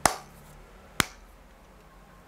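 Two sharp finger snaps about a second apart, the first a little louder.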